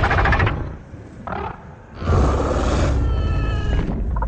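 King Ghidorah's roars, as film sound effects. A roar trails off at the start, a short cry comes just after a second in, then a long, loud roar from halfway through takes on a steady, high, screeching edge near the end.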